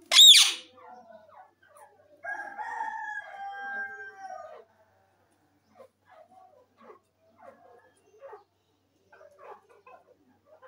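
Indian ringneck parakeet giving one loud, sharp screech at the start. About two seconds later comes a drawn-out call of about two seconds that holds its pitch and then falls away. Soft, quiet chattering follows.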